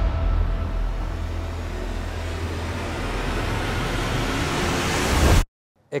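Suspense sound effect laid over the scene: a low rumble under a rising hiss that builds for about five seconds and then cuts off suddenly.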